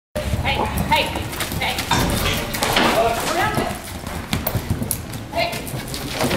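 A horse galloping on arena dirt, its hoofbeats running through a barrel-racing pattern, with indistinct human voices over them.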